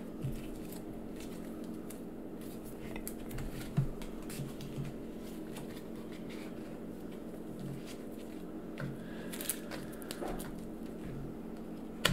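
Handling of board-game cards and pieces on a tabletop: scattered soft taps and rustles, with one sharper knock about four seconds in, over a steady low hum.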